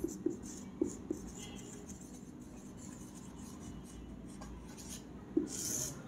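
Felt-tip marker writing on a whiteboard: faint scratching strokes with a few light taps in the first second. A longer stroke near the end is the loudest sound.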